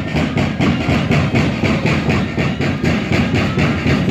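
Festive band music accompanying the moseñada dance, driven by a steady, fast drum beat.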